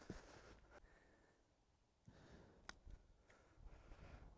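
Near silence: faint outdoor background with one brief, faint click a little over halfway through.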